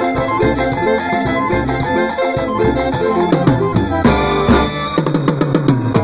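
Brass band with sousaphones, horns, trumpets and trombones playing over a drum kit. A cymbal crash comes about four seconds in, then a quick drum fill near the end.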